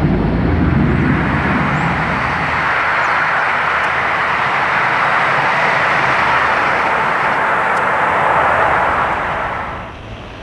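Turboprop airliner in flight, the Vickers Viscount's Rolls-Royce Dart engines: a loud steady roar whose deep rumble fades over the first couple of seconds while a higher rushing note swells, then dies away near the end.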